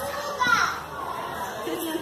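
Group of young children's voices chattering, with one short high-pitched child's cry about half a second in as the loudest moment.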